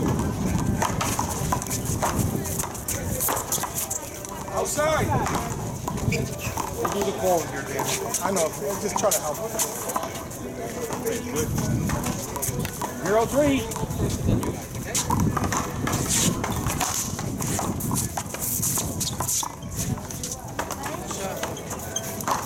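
Irregular sharp knocks of a paddleball game: the ball striking paddles, the wall and the concrete court. People's voices talk throughout.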